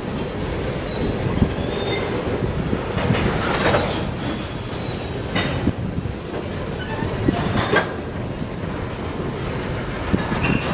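Freight train cars rolling very slowly through a road crossing: a steady rumble of wheels on rail, with a few short sharp sounds about 3.5, 5.5 and 7.5 seconds in.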